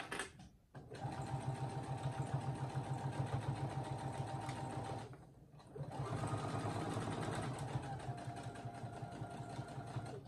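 Brother SE1900 sewing machine running at a steady stitching pace, top stitching close to the edge of fabric. It stops briefly about halfway through, then runs again.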